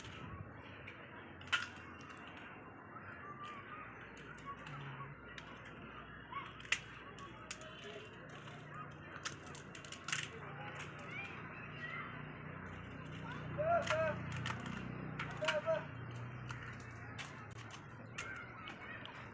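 Crisp fried puri shells being cracked open one by one with the fingers, giving sharp little cracks at irregular intervals, several dozen seconds' worth of preparation, with a few louder snaps among them.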